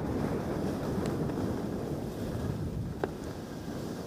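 Wind rushing over a helmet-mounted camera's microphone while skiing, mixed with the steady scrape of skis over choppy, ungroomed snow, and one faint tick about three seconds in.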